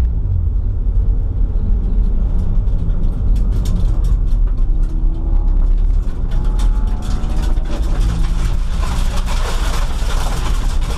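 Race car engine running at low revs while the car rolls slowly, heard from inside a bare cabin as a steady rumble, with scattered clicks and rattles. A hiss builds over the last couple of seconds as the car picks up a little speed.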